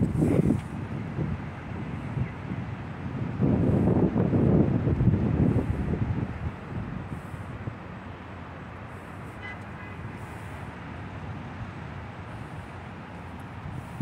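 Outdoor city background: a low rumble that swells briefly at the start and again for a couple of seconds about four seconds in, then settles into a steady, quieter hum.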